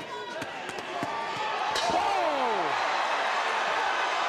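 Punches landing as a few sharp impacts in the first two seconds. Then the arena crowd's noise swells as a boxer is knocked down, with a commentator's shout of "Oh!" about halfway through.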